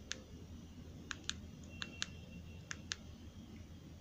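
JioPhone keypad buttons pressed by thumb: about seven short, sharp clicks, mostly in quick pairs, over a low steady hum.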